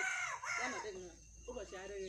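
A rooster crowing, a long pitched call rising and falling at the start, with a voice also heard.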